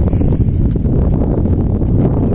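Hoofbeats of a purebred Quarter Horse mare walking under a rider on a dirt track, heard over a steady low rumble.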